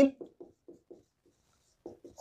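Whiteboard marker writing on a whiteboard: about five short, faint strokes in the first second and a half, then a pause.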